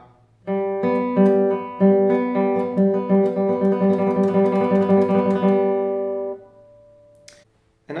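Classical guitar played with the fingers, a fast, even run of repeated plucked notes alternating between two strings, the ring, middle and index fingers striking in turn as a trill exercise. It starts about half a second in and stops about six seconds in, leaving the last notes ringing briefly.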